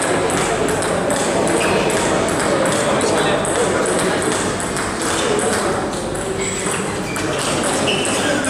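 Table tennis balls clicking off bats and the table, many short sharp ticks in irregular succession, over steady background chatter of voices in a large hall.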